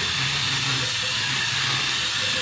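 LEGO SPIKE robot's four motors whirring steadily, with a faint high tone over a low hum, as the four-wheel robot pivots on the spot in a left turn with its left and right wheels running in opposite directions.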